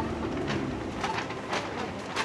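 Outdoor street ambience at a city corner, with a few short bird calls and scattered light clicks, as the tail of a music track dies away at the start.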